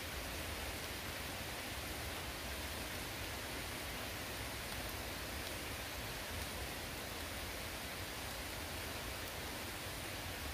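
Light rain falling steadily on forest foliage, an even hiss with a low rumble underneath.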